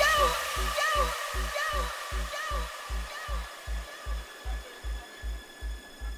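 A hard dance DJ mix stripped back to a lone kick drum thudding at a little under three beats a second, under a hissing echo tail of a vocal or synth that fades away.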